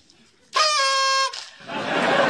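A single short, high, horn-like tone, about three-quarters of a second long, starting about half a second in and holding one steady pitch after a brief rise.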